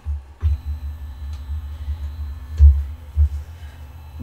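ATEZR P10 laser engraver powering on and driving its gantry and laser head across the bed, with a faint steady stepper-motor whine for about two seconds. Heavy low rumbling with a few strong thumps runs under it.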